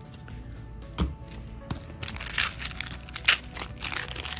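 Foil booster-pack wrapper crinkling as it is handled, a dense crackly rustle through the second half, over quiet background music. A single sharp tap comes about a second in.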